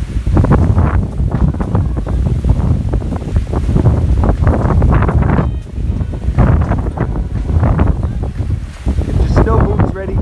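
Strong gusting wind buffeting the microphone: loud, rumbling noise that swells and dips with each gust, briefly easing about halfway through and again near the end.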